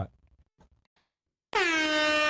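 Near silence for about a second and a half, then a loud air horn blast starts suddenly. It holds one steady note after a slight drop in pitch at its onset.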